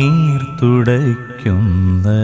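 A male voice singing a slow Christian devotional song in Malayalam, drawing out long notes that bend in pitch, over a light instrumental backing.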